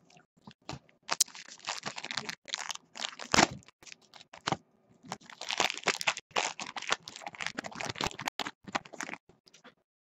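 Crinkly plastic-foil wrapper of a trading-card pack rustling and crackling as it is handled and opened, along with cards being shuffled, in two long stretches of crackling with a short pause between them.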